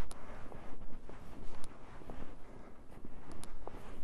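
Boots trudging through deep snow, irregular crunching steps, over a steady low rumble of wind.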